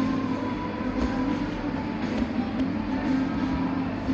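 Coffee shop ambience dominated by a steady low mechanical hum, with a few faint small clicks.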